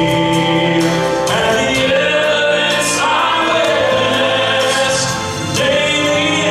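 Gospel song in performance: a male lead voice singing over accompaniment with choir-style backing vocals, in long held notes.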